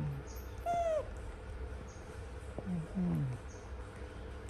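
Baby macaque giving one short, high, arching squeak-coo about a second in. Low falling hums are heard near the start and around three seconds.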